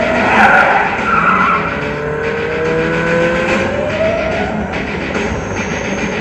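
Film trailer sound design: a dense bed of noise with several long rising whining glides, one after another.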